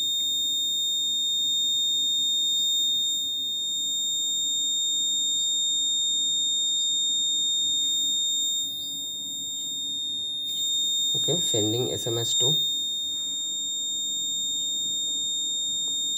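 Electronic alarm buzzer on the tracker board sounding one continuous high-pitched tone. It is the soldier-in-danger alert, set off by the long press and held while the GSM module sends the SMS alert.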